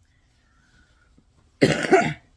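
A woman coughing once, loudly and harshly, into her hand about a second and a half in.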